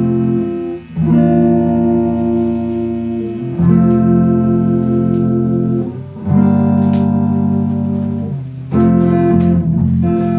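Guitar and bass guitar playing a slow instrumental intro before the vocal. Each sustained chord rings for about two and a half seconds before changing, with a brief dip at each change.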